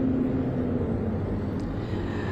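Steady low engine rumble with a faint hum, as outdoor background noise.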